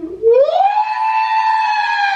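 A man's voice in high falsetto slides up and holds one long, steady note for about a second and a half: a puppet character's drawn-out cry.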